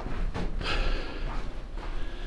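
Breathing close to the microphone, with a longer breath about half a second in, over a low steady rumble.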